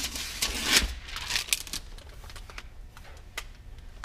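Laptop being handled on a workbench: irregular clicks, taps and rustles as its lid is tilted back and the machine is turned about, with a louder rustle just under a second in and a sharp click late on.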